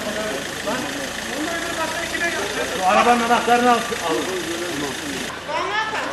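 Several people's voices talking, loudest about three seconds in, over a car engine idling.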